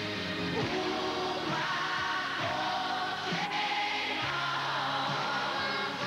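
Live pop song performance: a man and a young girl singing together into microphones over instrumental accompaniment, holding long notes.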